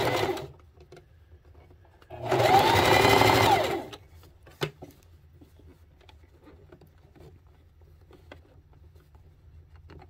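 Electric sewing machine stitching in short spurts. The main run, about two seconds in, lasts about a second and a half, its motor whine rising in pitch and then falling as it speeds up and slows. Faint clicks of the fabric being handled follow.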